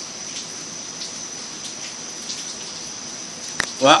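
Steady hiss with a faint high-pitched whine. A click comes near the end, then a man starts to speak.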